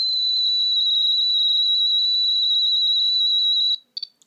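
REMPod-style EMF detector sounding its overload alarm: one steady, loud, high-pitched tone that cuts off suddenly near the end. The overload comes from a strong field at the antennas, after which the device resets itself to zero.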